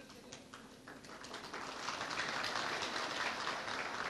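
Audience applauding: a few scattered claps at first, building from about a second in into steady applause.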